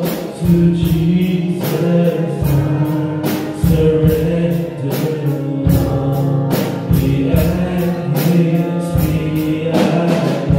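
Male voices singing a gospel hymn in harmony into microphones, over an accompaniment with held bass notes and a steady drum beat of about 100 beats a minute.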